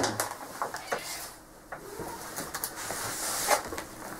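A pet tabby cat making faint calls, mixed with light knocks and rustling.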